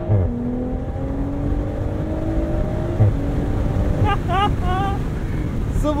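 BMW Z4 M40i's turbocharged inline-six accelerating hard through the gears with the top down. Its note climbs steadily, and at the start and about three seconds in it drops sharply on an upshift, each marked by a short thump.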